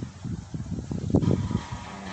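A car passing on a nearby street: a low rumble that builds and is loudest just over a second in.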